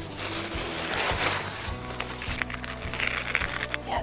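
A paper napkin rustling and crinkling in irregular bursts as its thin plies are picked and pulled apart by hand, over a steady background music bed.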